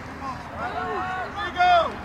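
Several voices calling out at once across an outdoor lacrosse field, with one loud, high-pitched shout about one and a half seconds in.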